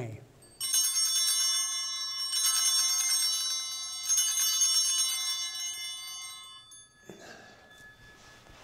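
Altar bells rung three times, each ring a bright jangle of several high tones that then dies away. They mark the elevation of the chalice at the consecration of the Mass.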